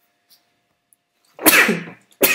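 A man sneezes once, a sudden sharp burst about a second and a half in, after a near-silent pause.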